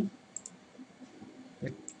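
A few light clicks from a computer's mouse or keys: two close together about half a second in and another near the end.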